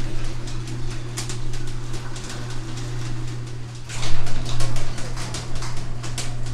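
Electric garage door opener running as it lowers the door: a steady motor hum with a fast rattle of clicks from the moving door, louder about four seconds in.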